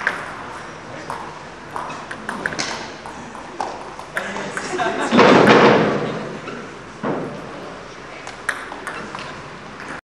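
Table tennis ball clicking off bats and table at uneven intervals, with voices in the hall that swell loudly about five seconds in.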